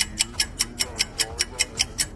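Ticking-clock sound effect, fast and even at about five ticks a second, marking a countdown running down.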